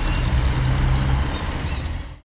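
Street traffic noise dominated by a motor vehicle engine running close by: a steady low rumble with a constant hum.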